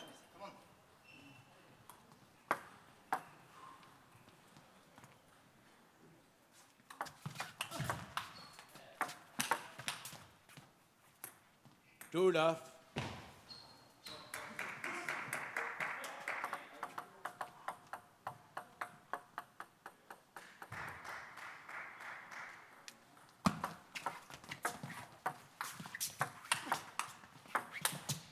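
Table tennis rallies: the ball clicking off bats and table in quick alternation, in two runs of strokes, one about seven seconds in and another near the end.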